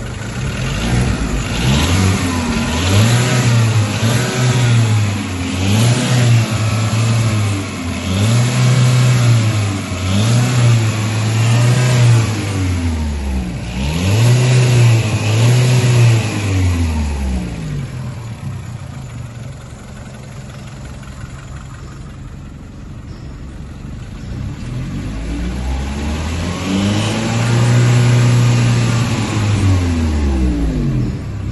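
Volkswagen Polo Mk5's CGG 1.4-litre four-cylinder petrol engine running and revved in a series of short blips that rise and fall. It settles to a steady idle for several seconds past the middle, then is held at higher revs near the end.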